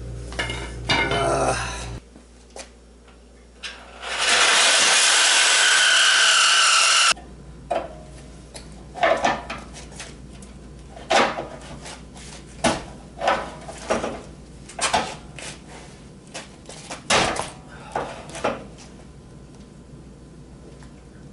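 Hand tools and metal parts clanking, knocking and scraping at a car's damaged front end, in irregular strikes about a second apart. About four seconds in comes a loud, steady hiss lasting about three seconds that starts and stops sharply.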